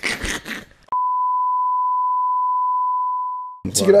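A single steady high-pitched reference tone, the kind that goes with broadcast colour bars, edited into the audio; it starts abruptly about a second in, holds one pitch for about two and a half seconds and fades out just before talk resumes.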